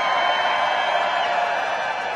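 A large crowd cheering and shouting, at its loudest through these seconds and easing off slightly near the end.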